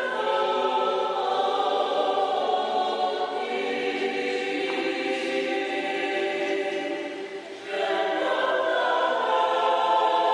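A small mixed choir of men's and women's voices singing a hymn in unison-like harmony, accompanied by acoustic guitar, with a brief drop between phrases about three-quarters of the way through before the singing picks up again.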